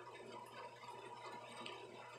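Faint room tone: a low, even background hiss with a steady hum.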